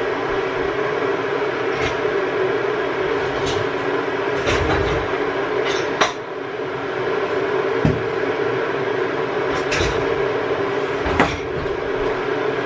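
Electric kettle heating water for tea: a steady rushing rumble. On top of it come a few sharp knocks and clinks of crockery and cupboards being handled, the loudest about six seconds in and just after eleven seconds.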